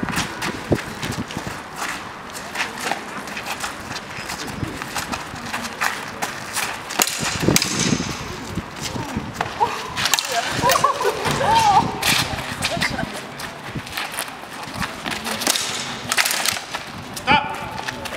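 Two fencers sparring with swords: irregular sharp clacks of blades striking each other and quick footwork, spread through the bout, with voices in the background.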